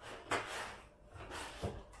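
Cardboard rubbing and scraping as the charger's small cardboard box is pulled out of the laptop's cardboard shipping box: two scrapes about a second apart, then a light knock.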